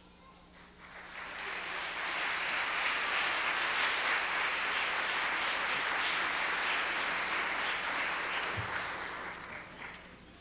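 Audience applauding: the clapping swells about a second in, holds steady, and dies away near the end.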